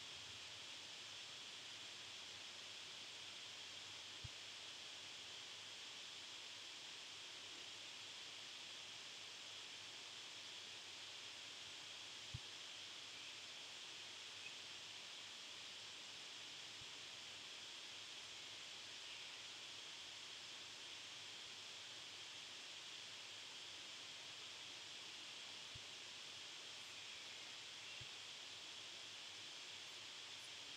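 Near silence: a steady faint hiss of room tone, with a few faint soft taps.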